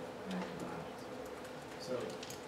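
A pause in speech filled by room tone with a steady hum, and a brief murmur of voice near the start.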